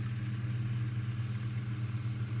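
Steady low hum of a running machine, even and unchanging in pitch.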